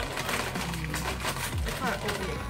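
Background music with a steady beat, over the crinkling of a plastic snack bag of Flamin' Hot Cheetos being handled and shaken out. A brief voice comes in near the end.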